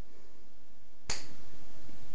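A single finger snap about a second in, a short sharp click.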